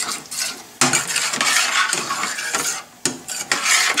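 A spoon stirring and scraping thick tomato-puree gravy in a stainless steel sauté pan on the heat, in long rough strokes broken by two short pauses.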